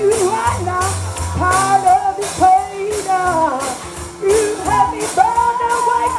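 Music: a singing voice carrying a melody over bass notes and a steady high percussion beat.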